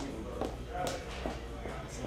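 Restaurant background: a low murmur of indistinct voices over a steady low hum, with a sharp light click just under a second in.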